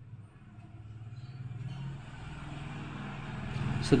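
Low hum of a vehicle engine, growing steadily louder.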